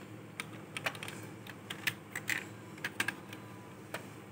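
Hard plastic DX Ixa Driver toy belt buckle clicking and knocking as it is handled and turned around on a hard surface: an irregular string of light, sharp clicks, with no electronic sounds or voice from the toy.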